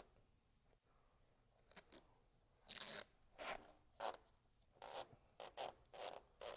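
Masking tape being pulled off the roll in a series of short, zipper-like rips, about six of them in the second half, after a quiet start.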